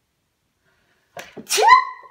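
A person sneezing once, loud and sudden, about one and a half seconds in, with a short intake of breath just before it.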